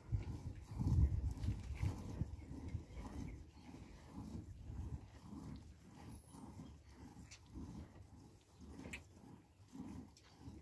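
Hand milking of a cow into a plastic bucket: soft milk squirts in an even rhythm of about two or three a second, with a louder low sound from the cattle about a second in.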